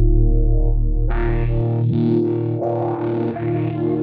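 Trap beat instrumental: a distorted electric guitar melody with effects over a deep 808 bass. The bass cuts out about a second and a half in, leaving the guitar on its own.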